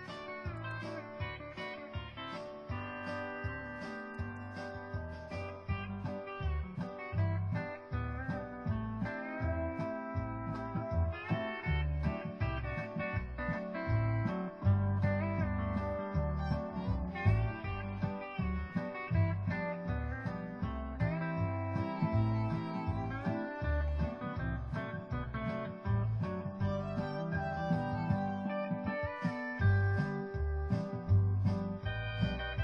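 A recorded steel guitar instrumental plays a peppy, speedy country tune, with gliding, bending notes over a steady bouncing bass beat.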